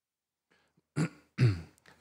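A man clearing his throat at a microphone after a second of silence: a short sharp burst about a second in, then a brief voiced rasp just after.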